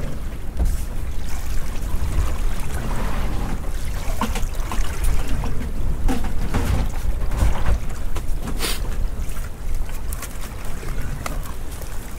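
Wind buffeting the microphone on a small open boat at sea, a steady low rumble, with trickling water and a few scattered knocks and clatters from handling gear on deck.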